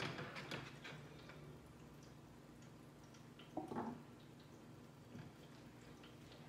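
Quiet kitchen handling sounds: a few light clicks and knocks of a plate and utensils on the counter and stovetop in the first second, and one short soft knock a little past halfway, over a low steady hum.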